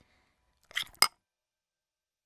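Spoon clinking against a small baby-food jar: a faint short scrape, then one sharp clink about a second in. The rest is near silence.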